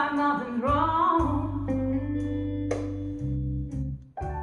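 Blues recording with guitar over a steady bass line, played through loudspeakers driven by a DIY 7591 push-pull valve amplifier and picked up by a phone microphone in the room.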